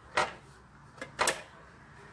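Two short clacks about a second apart from the grill plates of a Vestel Şölen T 3500 contact grill being handled.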